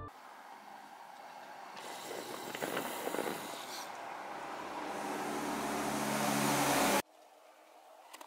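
Road traffic: a passing vehicle's tyre and engine noise building steadily louder, then cut off abruptly about seven seconds in.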